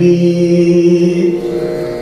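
Male Carnatic vocalist holding a long sung note in raga Shanmukhapriya over a steady tanpura drone. The voice fades out near the end while the drone carries on.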